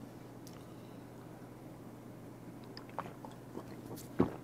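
Faint sounds of a man drinking makgeolli from a glass: a few small swallowing clicks over a steady low hum.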